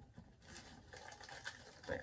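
Faint rustling and light ticks of small items and purse fabric being handled as things are moved from a purse into a pouch.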